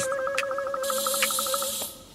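Cartoon robot-mechanism sound effect: a steady electronic tone with a rapid ratcheting buzz of about a dozen clicks a second, joined by a hiss about a second in, the whole fading out near the end.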